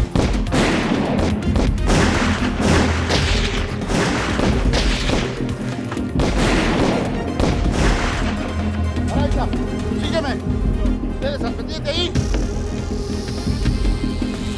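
Film gunfire: rapid shots in volleys over dramatic background music, densest in the first several seconds and thinning out until only the music remains near the end.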